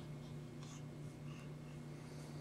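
Faint rustling and scratching as a plush toy is handled, over a steady low hum.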